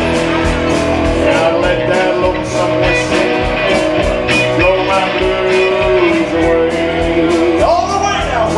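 A live rock band playing an instrumental stretch of a country-rock song. Guitars, bass and drums keep a steady beat, and a lead line bends up and down in pitch.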